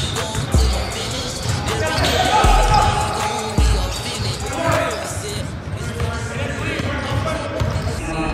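Basketballs being dribbled and bouncing on a hardwood gym floor, several balls at once, with voices of players around the court.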